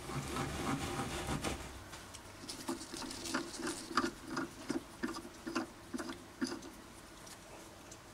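Brass ball being unscrewed by hand from the steel thread on the end of a lathe mandrel: a run of small irregular clicks and scrapes from the thread and handling.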